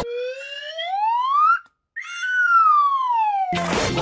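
A whistle-like cartoon sound effect: one tone slides steadily up in pitch for about a second and a half, breaks off briefly, then slides back down. Music comes back in near the end.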